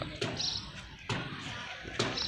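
A few dull thumps or knocks, the loudest a little after a second in, over low background noise.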